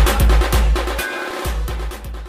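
DJ remix music driven by heavy bass-drum and snare hits. The bass drops out briefly about a second in, and the track grows quieter toward the end.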